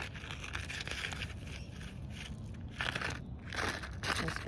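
Paper seed packet crinkling and rustling as it is handled and opened, with two louder bursts of crinkling near the end.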